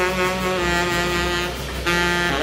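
Tenor saxophone holding one long low note, which breaks off near the end as a new note begins, over a steady low rumble.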